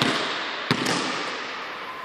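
Basketball dribbled on an indoor court floor: two bounces close together a little under a second in, each echoing in the large hall, then the echo dies away.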